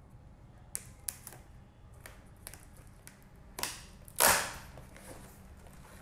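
Hands opening a taped cardboard box: a few light clicks and taps on the cardboard, then a short ripping rasp of packing tape pulling away from the cardboard a little after the middle, the loudest sound.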